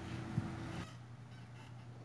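A pause in the talk: council-chamber room tone with a steady low hum. A short held hum-like tone in the first second, with a faint click, then quieter.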